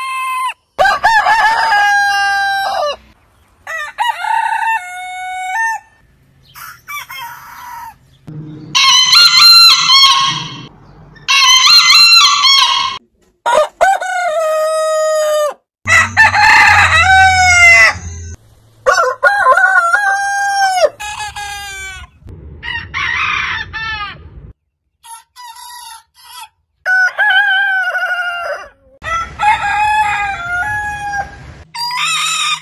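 Roosters of different heritage breeds crowing one after another, about a dozen crows in a row. Each crow lasts a second or two, and the voices and pitches change sharply from one bird to the next.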